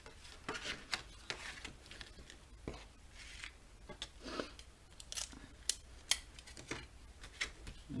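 Stiff black cardstock being folded open and handled on a cutting mat: scattered paper rustles and soft taps, with a couple of sharp clicks about six seconds in.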